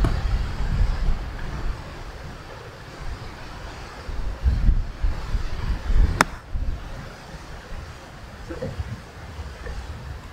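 Gusting wind buffeting the microphone, with a single sharp crack of a 54-degree wedge striking a golf ball about six seconds in, played as a low knockdown shot.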